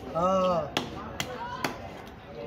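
Knife strokes on a tilapia against a wooden chopping block: three sharp knocks about half a second apart as the fish is scaled. A voice calls out briefly just before the first knock.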